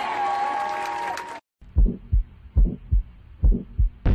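A held note from the live concert sound breaks off abruptly about a second and a half in. Then comes a heartbeat sound effect: three low double thumps, lub-dub, a little under a second apart.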